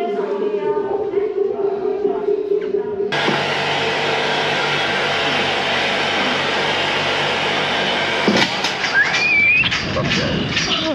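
Temple chanting over a steady drone, cut off abruptly about three seconds in by loud wind rushing over the microphone on a moving swing ride, with a short rising squeal near the end.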